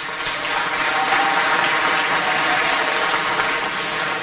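Audience applauding: dense, steady clapping from a crowd that builds in the first second and eases slightly near the end.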